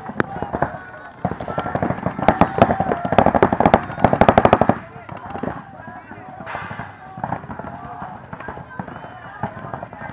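Paintball markers firing in rapid strings of shots, densest in the first half, with people shouting over them.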